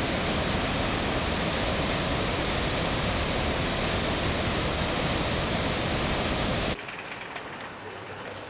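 Steady outdoor background noise, an even rush with no distinct events, that drops suddenly to a quieter rush about seven seconds in.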